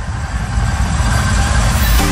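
A deep rumbling bass drone in an electronic dance music set, with a hiss that swells toward the end as a build-up before the music comes back in.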